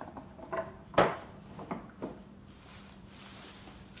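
Long wooden lever handle of a hand-built block-compression press knocking against the press frame as it is lifted and set into place: a few short clunks, the loudest about a second in.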